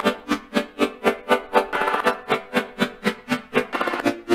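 A Serum software-synthesizer chord playing back, its volume chopped by an LFO into even pulses about four times a second.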